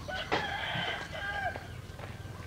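A rooster crowing: one drawn-out call held for about a second and a half, with a single sharp knock about a third of a second in.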